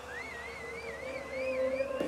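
Quiet breakdown in a house/techno DJ mix: a held low pad tone under a high, wavering melodic line that slowly climbs in pitch.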